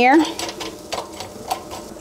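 A metal fork pushing frozen green beans around a nonstick air fryer basket to spread them in an even layer, giving a few light clicks and scrapes against the basket.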